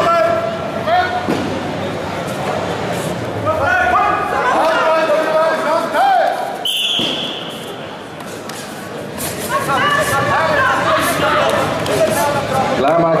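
Coaches and spectators shouting in a large, echoing sports hall during a full-contact karate bout, with scattered thuds of strikes and footwork on the mat. A short high whistle-like tone sounds about seven seconds in.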